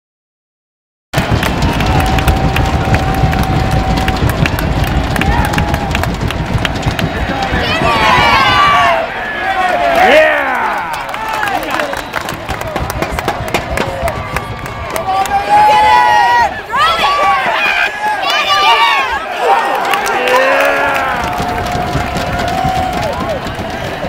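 Football stadium crowd noise that starts about a second in, with spectators near the microphone yelling and cheering in bursts as plays are run.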